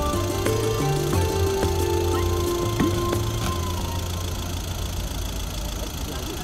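Background music with held notes over a stepping bass line, thinning out about halfway through and leaving a low, steady rumble.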